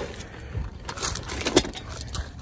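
Footsteps crunching on loose gravel: a few irregular steps with scattered crackle, the loudest crunch about a second and a half in.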